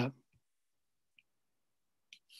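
A man's voice trailing off at the start, then near silence with one faint click about a second in.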